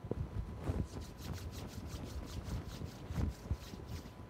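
Lecture-room background noise in a pause between speech: a low, uneven rumble with scattered faint knocks and a thin steady tone in the recording.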